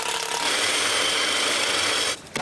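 A power drill runs with a steady whine. Less than half a second in, the sound changes to a miter saw running with a high, steady whine.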